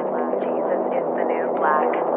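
Electronic soundtrack music: a steady low synth drone with a repeating pulsing pattern above it, about three accents a second.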